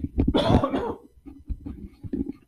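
A man coughing, loudest in the first second, then a few short, quieter throat sounds.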